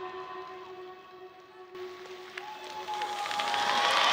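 Electronic dance-routine music winding down on held synth tones. Then audience applause and cheering swell over the last two seconds as the routine ends.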